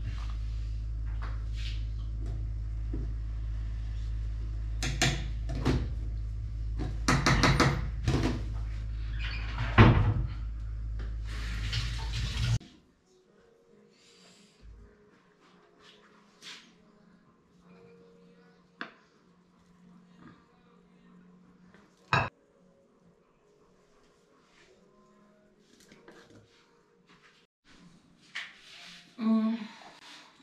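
Kitchenware handling: knocks and clatter of a pot, utensils and cupboard doors over a steady low hum that cuts off abruptly about twelve seconds in. After that, quieter scraping and one sharp knock as cooked rice is turned out of a steel pot into a ceramic bowl.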